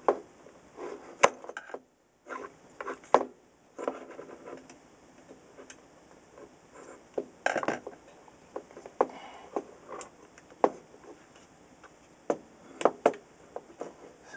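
Irregular clicks, taps and light knocks of a screwdriver and an old radio's circuit board being handled and worked loose on a workbench, with a brief dead-silent gap about two seconds in.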